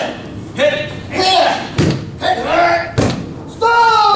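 Jujutsu practitioners' wordless shouts during throws, several short cries and a longer one near the end that falls in pitch, with two sharp thuds of a body slamming onto gym mats about two and three seconds in.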